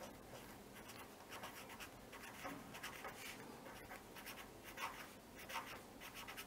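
Faint scratching of a pen writing on paper in short, irregular strokes.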